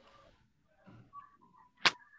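A single sharp click or tap near the end, much louder than anything else, with faint murmured voice and a brief thin tone just before it.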